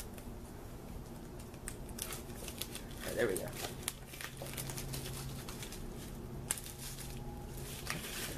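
Clear plastic shrink wrap crinkling and tearing as it is worked off a DVD box set by hand, with scattered small clicks and rustles of handling. A brief murmur of the man's voice comes about three seconds in.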